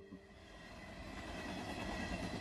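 BNSF diesel locomotive passing, a steady rumble of engine and rolling wheels that grows louder over about two seconds.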